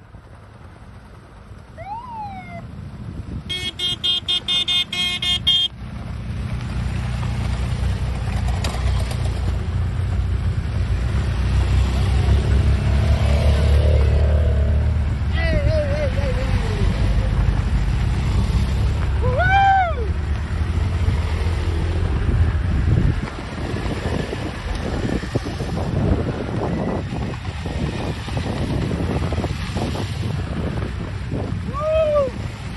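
A group of adventure motorcycles riding past on a gravel road, their engines rumbling, loudest in the middle of the pass and easing off later. A horn sounds a quick run of short beeps a few seconds in, and voices call out briefly a couple of times as the bikes go by.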